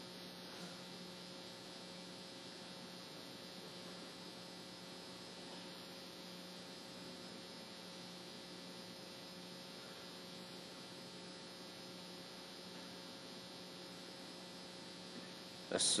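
Faint, steady electrical hum and hiss from the sound-system feed with no one speaking on it, a low drone with a few unchanging tones. A man's chanting voice cuts in at the very end.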